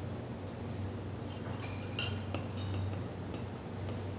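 Metal lever-press citrus juicer clinking against the glass tumbler it sits on as the pressing is finished, a short cluster of ringing clinks about halfway through, the sharpest near the middle.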